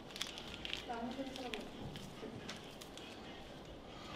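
Quiet room with faint voices in the background and a few light clicks and rustles as sugar is tipped from a paper sachet into a paper coffee cup.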